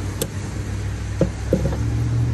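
Metal cap of a glass soda bottle clicking and scraping against a bottle opener mounted on a van door: a sharp click just after the start and two short knocks later, tries that do not yet pop the cap off. A steady low engine hum runs underneath.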